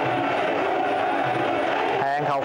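Stadium crowd noise, a steady mass of voices, with Muay Thai ringside music playing underneath.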